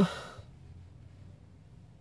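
A man's breathy sigh, an exhale that fades out within about half a second of his last word. After it there is only quiet with a faint low hum.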